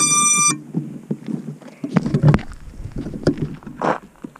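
A short electronic beep from FPV drone gear, a step higher than the beep just before it, as the link to the quad comes up with telemetry recovered. It is followed by clattering and rustling handling noise, with low thumps about two seconds in and a sharp rustle near the end.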